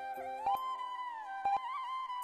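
Quiz countdown timer ticking once a second, each tick a quick double click, over background music with a sliding melody above steady held notes.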